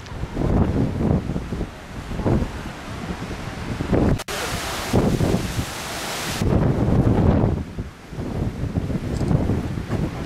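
Strong wind buffeting the microphone in gusts, a low rumble that swells and fades. It breaks off for an instant about four seconds in, followed by about two seconds of brighter, hissier wind.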